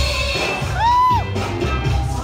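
Cha-cha-cha dance music playing over the hall loudspeakers. About a second in, a single high shouted whoop rises and then falls in pitch, typical of a spectator cheering the dancers.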